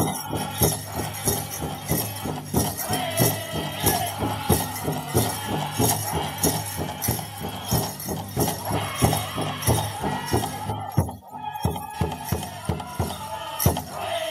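Powwow drum group singing a men's grass dance song in unison over a big drum struck in a fast, steady double beat. The drum and singing drop out briefly about eleven seconds in, then pick up again.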